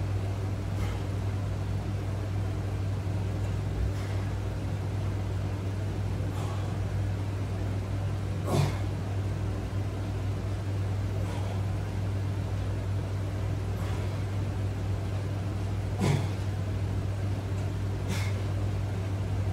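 A man exerting himself on seated resistance-band rows, short breaths about every two and a half seconds in time with the strokes, the loudest about halfway through and near the end, over a steady low hum.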